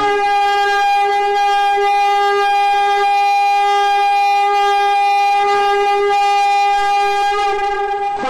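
A horn blast held as one long, loud, steady note, which fades away near the end.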